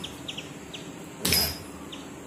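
A single thump on a hard floor about a second in, as a dancer's bare foot strikes it, with short high bird chirps behind.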